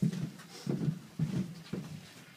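Several dull thumps about half a second apart: people shifting and stepping about on the floor of a van.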